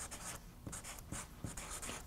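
Marker pen writing numbers on flip-chart paper: a run of short, faint strokes.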